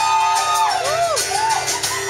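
Live band playing an instrumental passage: acoustic guitar, keyboard, electric guitar and drums. A held high melody note gives way about a second in to a few short swooping bends.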